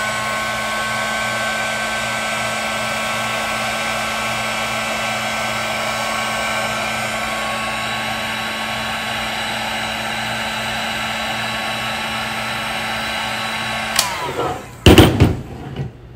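Handheld Paladin (Greenlee) electric heat gun running steadily with a fan whine while it heats and shrinks heat-shrink tubing over a wire splice. It switches off about 14 seconds in, followed by a couple of loud knocks.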